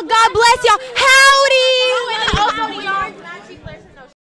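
Several young women's voices calling out and chattering over each other, with one long, steadily held vocal note about a second in; the voices fade out near the end.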